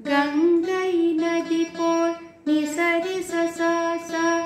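Saraswati veena played in Carnatic style: two plucked phrases, one at the start and one about two and a half seconds in, with sustained notes sliding and bending in pitch as the string is pressed along the frets.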